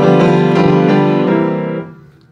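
Upright piano played with both hands: a full chord rings on, closing a 12-bar blues in C, then is released and stops near the end.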